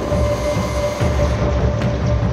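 AgustaWestland Merlin helicopter in flight: its rotor beating in a low, steady rhythm under a constant whine from its turbine engines.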